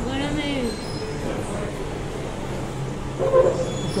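Steady low machine hum of restaurant equipment. A voice rises and falls in a sing-song way over it during the first second, and there is a short vocal sound just after three seconds.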